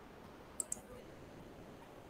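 Two quick computer mouse clicks, about a tenth of a second apart, a little over half a second in, over faint room hiss.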